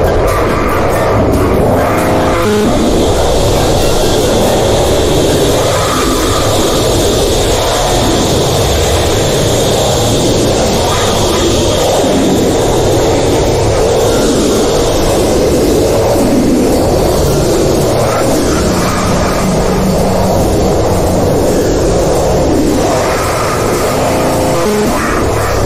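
Harsh noise music: a loud, dense, steady wall of distorted noise filling the whole range, with no speech.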